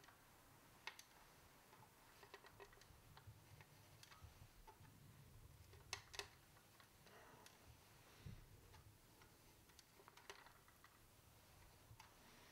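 Faint, scattered clicks of a tape-wrapped flathead screwdriver prying at the snap-in plastic tab of a toy plane's tail fin, near silence in between; the tab is stuck and not yet giving.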